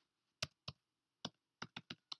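Computer keyboard keys being typed: six short, separate key clicks, unevenly spaced, with a quick run of three near the end.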